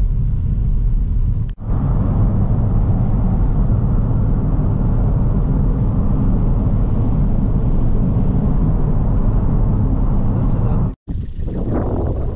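Steady low rumble of a car's engine and tyres heard from inside the cabin while driving. It breaks off for a moment about a second and a half in, and again sharply near the end.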